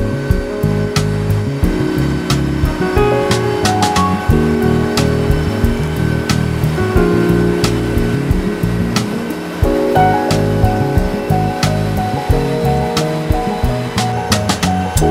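Background music: a steady beat with sustained chords that change every second or two.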